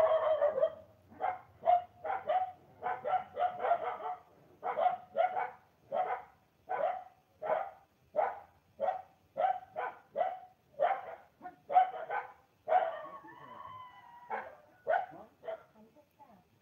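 A dog barking over and over, about two barks a second, with a short break about four seconds in.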